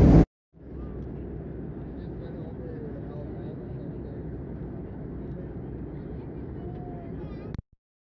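Steady airliner cabin noise, an even rumbling hush with faint passenger voices in it. It cuts in about half a second in and stops abruptly shortly before the end.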